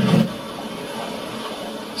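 Music cuts off just after the start, then steady road and engine noise heard from inside a moving car.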